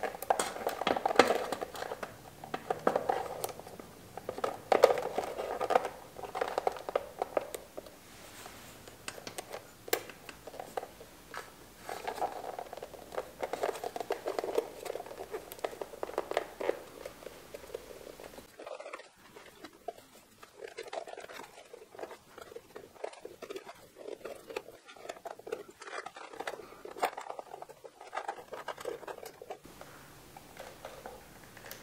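Rubber airbox boots being pushed and twisted onto the carburetor mouths of a Honda CB750: irregular rubbing and scraping with light clicks, busier for the first half and quieter after that.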